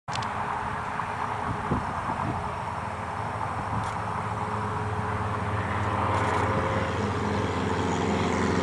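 Single-engine propeller light aircraft running at full takeoff power, a steady engine drone that grows gradually louder as the plane lifts off and climbs toward the listener.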